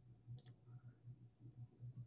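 Near silence with one faint click about half a second in: a computer mouse button clicking.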